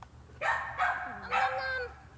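A toddler's high-pitched voice making three short vocal sounds, the last one longer and sliding down in pitch.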